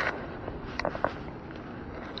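Cloth brushing over a body-worn camera's microphone, with a few faint clicks about a second in, over a steady background hiss.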